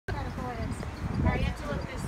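Indistinct talking from people close by, over a steady low rumble.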